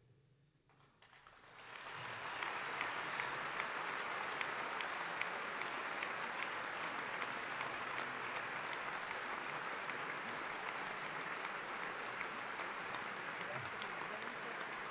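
Large assembly of parliamentarians applauding, swelling up a second or two in and then holding steady: the applause greeting the President of the Republic's oath of office.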